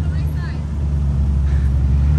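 McLaren supercar rolling in at low speed, its engine a steady low drone that grows a little louder as it nears.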